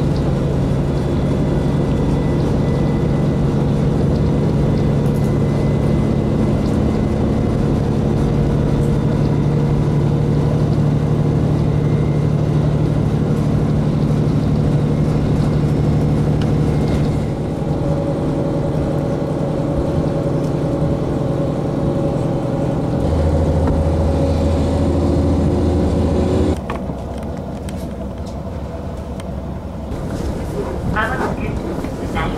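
KiHa 40 diesel railcar's engine running steadily, heard from inside the carriage as a continuous drone. Its tone shifts about halfway through, a deeper hum joins a few seconds later, and near the end the sound drops suddenly to a quieter running noise.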